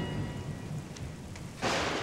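The tail of a dramatic music cue dies away. About one and a half seconds in, a sudden, loud rushing noise like a rainstorm begins and keeps going.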